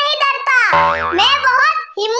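High-pitched cartoon character voice talking rapidly, with a comic sound effect about two-thirds of a second in that lasts about a second, its pitch dipping and rising again.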